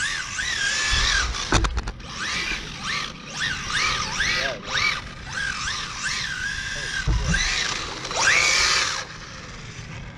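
Kyosho Charger electric RC car's motor whining, its pitch swooping up and down again and again as the throttle is worked. A strong rising whine comes near the end, and there are two brief low thumps, about one and a half and seven seconds in.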